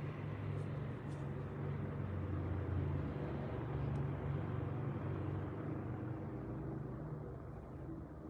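A steady low rumble with a hum in it, swelling slightly through the middle and easing off near the end.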